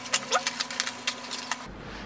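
Snap-off utility knife slitting packing tape and cardboard on a parcel: a quick run of scratchy clicks and short tearing squeaks that stops abruptly about one and a half seconds in.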